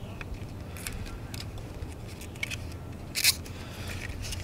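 Handling noises as a plastic third brake light and its adhesive foam waterproof seal are fitted and pressed into place by hand: scattered small clicks and rustles, with one louder brief rustle about three seconds in.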